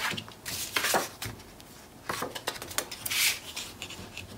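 Sheets of patterned paper and cardstock being handled and slid across a cutting mat, with a few short rustles and scrapes, the loudest about three seconds in.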